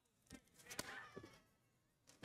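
Near silence: room tone with a few faint clicks and one faint, brief sound about a second in.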